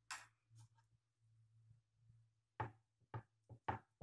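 A spoon clinks once against a small glass bowl. Then, in the second half, come about four short knocks on a wooden cutting board as hands fold and press a thin pork loin fillet.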